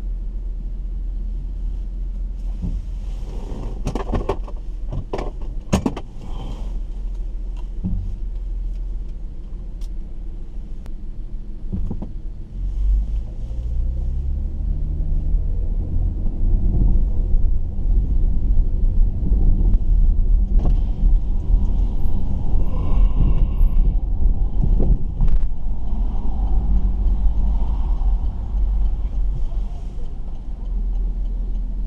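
Car engine and road rumble heard from inside the cabin while driving. About twelve seconds in, the engine speeds up with its pitch rising in steps, and the rumble stays louder from then on. A few sharp clicks come between about four and six seconds in.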